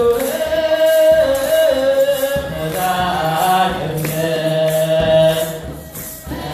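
A group of young men chanting Ethiopian Orthodox wereb in Ge'ez together, in long held notes with slow melodic turns. The phrase breaks off briefly near the end.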